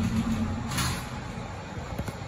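2003 LG lift's car doors sliding shut, with a low motor hum, a brief rushing hiss about a second in, and a click as they close at the end.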